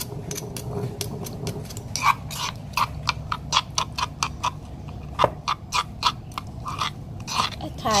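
Metal spoon stirring a thin chilli dipping sauce in a granite mortar, clicking against the stone in a steady rhythm of about three or four clicks a second.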